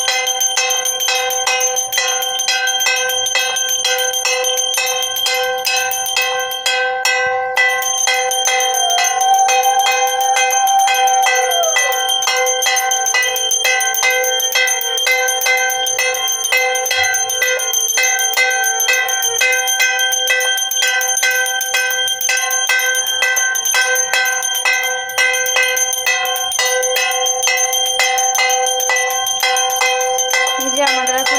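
Puja bell rung rapidly and without pause for aarti worship: a steady, dense metallic ringing.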